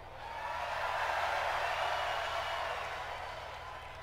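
Arena crowd cheering and applauding, swelling in the first second and slowly fading.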